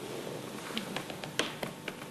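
Faint, irregular clicks of a safe's combination dial being turned by hand, about six of them in the second half, over a low steady hiss.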